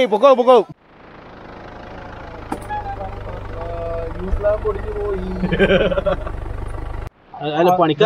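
A loud voice is cut off in the first second. Then the low rumble of an off-road SUV's engine running close by grows steadily louder, with faint talk over it, and stops abruptly near the end as speech comes back.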